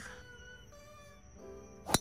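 A single sharp crack of a driver striking a golf ball off the tee, near the end, over faint background music.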